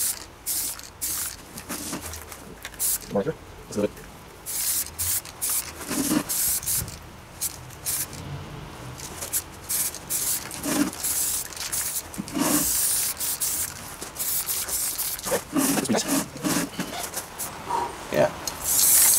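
Aerosol spray-paint can hissing in many short bursts, with a longer burst about two-thirds of the way through, as paint is sprayed onto a steel helmet.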